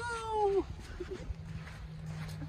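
A woman's voice stretching out the word "you" in a long, falling sing-song tone that ends about half a second in, followed by a low background rumble.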